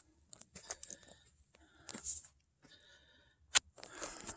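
Footsteps crunching irregularly on a rocky dirt trail strewn with dry leaves, with one sharp click a little before the end.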